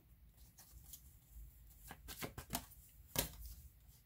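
Tarot cards handled in the hand: faint, short flicking and sliding clicks as cards are drawn from the deck, in a cluster about two seconds in and a stronger one just after three seconds.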